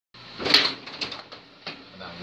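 Carrom Super Stick dome hockey table in play: plastic players and rods clacking and rattling as they are spun and pushed. Several sharp clacks, the loudest about half a second in.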